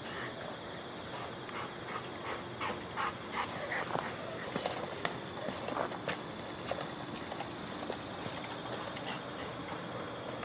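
A police dog breathing in quick, evenly spaced pants, about three a second, followed by a scatter of sharp clicks from its claws and steps.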